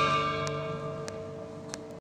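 Electronic keyboard's closing chord of a hymn, held and fading away after the hands leave the keys. Three faint clicks are heard at even spacing while it dies down.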